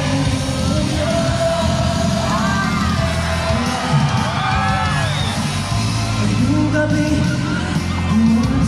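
Loud live music over an arena sound system, with singing and the audience screaming and cheering, the cheers swelling about two to five seconds in.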